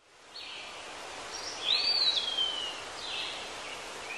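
Steady outdoor background hiss with a few short high chirps from a bird. About two seconds in, one longer whistled call rises sharply and then slides slowly down.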